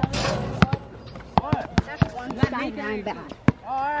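Basketball bouncing on an outdoor court: several sharp thuds at irregular intervals, among children's voices.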